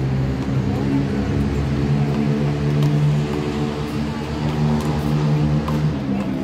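A loud, steady low drone like an idling motor. A couple of sharp smacks of a handball against the court wall cut through it, one about three seconds in and one near the end.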